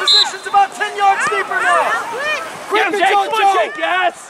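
Several voices shouting and calling out over one another from the sideline.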